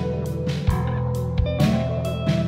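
Instrumental underground metal with a jazz bent: guitar playing sustained notes over drums, with sharp drum and cymbal hits.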